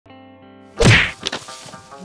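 A loud whack, a fight-scene hit sound effect, about a second in, followed by two lighter knocks, over a held music chord.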